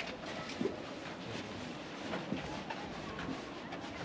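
Faint open-air ambience: soft footsteps of a small group walking, with a few faint, indistinct short voices or calls.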